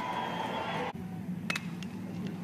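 Ballpark crowd ambience from a TV broadcast, with a steady musical tone over it that cuts off abruptly about a second in. It is quieter after the cut, with one sharp click soon after.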